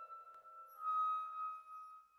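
Chamber orchestra in a soft passage: one high instrumental note held quietly, stepping slightly lower about halfway, while faint lower accompanying notes die away early.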